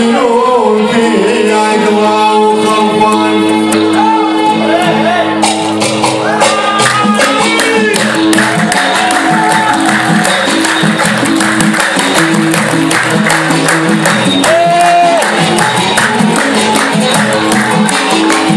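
Music: a Gulf Arabic song with singing over melodic instruments; about five and a half seconds in, a fast, dense percussion beat comes in and carries on.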